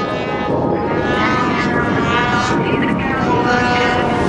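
Two-stroke snowmobile engine revving high, its whine wavering up and down in pitch.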